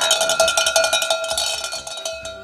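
A handheld metal cattle bell shaken fast, ringing steadily with a quick rattle of strikes and slowly fading toward the end.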